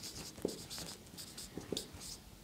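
Marker pen writing on a whiteboard: faint, short scratchy strokes with a few small taps.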